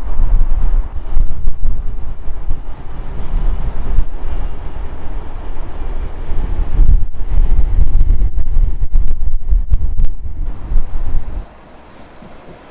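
Strong wind buffeting the microphone in loud, uneven gusts, over the sound of a regional passenger train crossing a rail bridge. It cuts off abruptly near the end.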